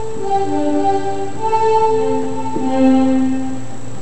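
Solo instrumental music: a slow melody of steady, held notes, each lasting about half a second to a second.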